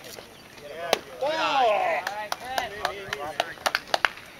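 A pitched baseball arrives at the plate with one sharp crack about a second in, followed by a loud shouting voice and a few more short sharp clicks near the end.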